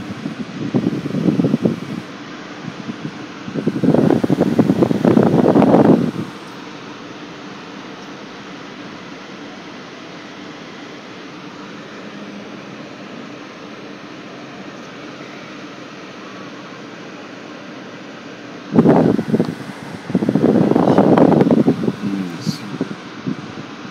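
A car's air-conditioning fan runs steadily inside the cabin with a constant blowing hum. Louder bursts of noise of a few seconds each break in about four seconds in and again near the end.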